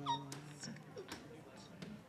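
A man's voice holding an intoned note that ends a moment in. Then come faint scattered clicks and rustling in a quiet, reverberant room.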